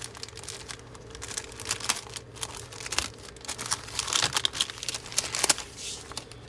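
Clear plastic bag crinkling in irregular crackles as it is opened by hand and a paper decal sheet is slid out.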